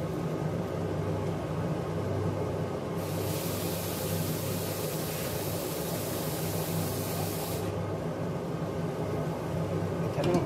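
Steady low hum of a running induction hob. An even hiss cuts in abruptly about three seconds in and cuts out just as abruptly about four and a half seconds later.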